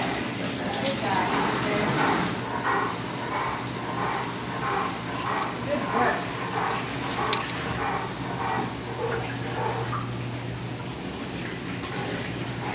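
Hydrotherapy underwater treadmill running with a steady low hum, with water sloshing in short, regular surges about twice a second as a dog walks on the submerged belt.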